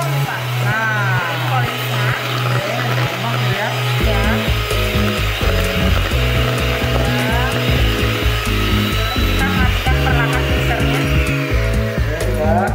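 Electric hand mixer running steadily, its beaters whisking a green mixture in a stainless steel bowl, under background music with a steady beat. The mixer stops near the end.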